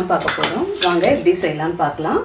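A voice talking, with a few sharp high clinks among the words.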